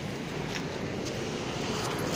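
Steady street traffic noise, a continuous low rumble with an even hiss and no distinct events.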